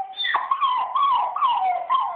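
A dog crying in a high whining howl: one held note, then a run of wavering notes sliding up and down in pitch. It is the sound of a dog in separation distress, missing his owners who are away.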